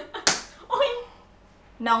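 A single sharp slap of a hand on a motorcycle helmet, about a quarter second in.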